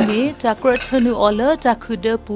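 A voice speaking over a few sharp clinks of a knife and fork against a plate and a wooden chopping board.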